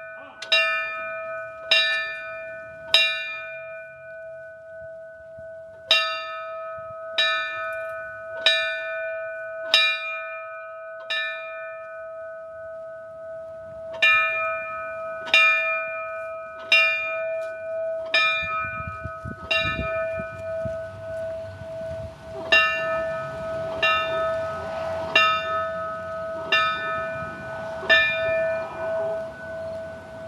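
Fire engine's brass bell struck by hand and tolled in sets of five, about one stroke every 1.3 seconds, with a pause of about three seconds between sets; each stroke rings on with a steady tone. The tolling in fives is the fire service's traditional signal honouring fallen firefighters.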